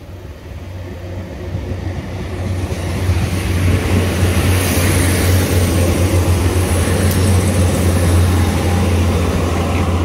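Northern Ireland Railways diesel multiple unit approaching and passing close by. Its engine and wheel noise grow louder over the first three seconds, then hold steady and loud with a deep hum underneath.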